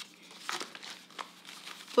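Paper being handled and crinkling, in a few short, irregular crackles.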